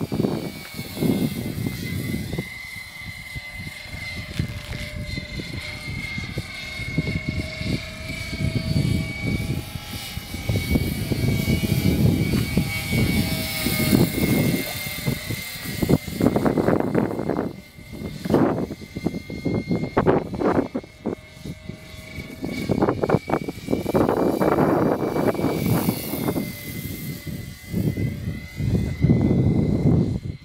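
Radio-controlled scale CV-22 Osprey tiltrotor model in flight: its motors and rotors make a steady high whine that holds nearly one pitch, drifting slightly as the model passes, over an uneven low rumble.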